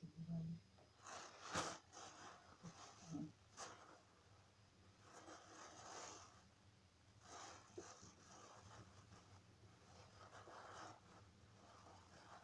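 Near silence with a low hum, broken by several faint, short rustles as a white bag or cloth is handled close to the phone.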